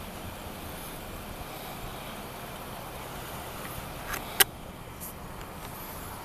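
Steady background noise of idling vehicles, with a sharp click a little past four seconds in, preceded by a weaker one.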